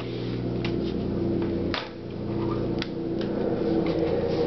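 A few light clicks and taps as hands handle a netbook and open its lid on a glass-topped table, over a steady low hum.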